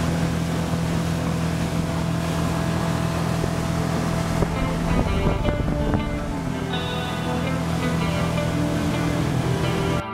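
Small fishing boat's outboard motor running steadily at speed, a constant low hum over the rush of wind and water. Music plays faintly underneath from about halfway through.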